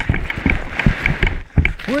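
Cardboard box sled scraping and crunching over snow in irregular bursts as it slows to a stall, with a laugh at the very end.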